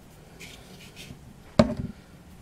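Faint rustling, then one sharp knock of a hard object set down on the craft table about one and a half seconds in, followed by a short clatter.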